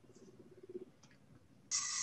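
A quiet line on a video call, with a faint low hum in the first second and a short burst of hiss near the end.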